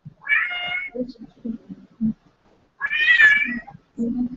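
Domestic cat meowing twice: two drawn-out calls about two and a half seconds apart, with a few dull low thumps between them.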